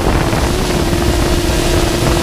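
Multirotor drone's motors and propellers running with a steady hum that lifts slightly in pitch about half a second in, picked up by a camera mounted on the drone, with wind buffeting the microphone.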